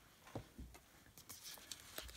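Faint handling of paper cards and envelopes: a couple of soft taps in the first second, then light paper rustling.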